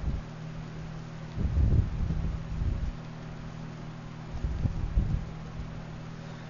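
Steady low hum of the recording's microphone background, with muffled low rumbles of microphone noise about a second and a half in and again near the five-second mark.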